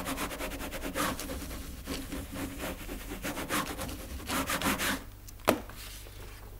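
Quick repeated rubbing strokes on a sheet of printing paper pressed over a carved wooden block, embossing names into a woodblock print. The strokes come in several runs, stop about five seconds in, and are followed by one sharp tap.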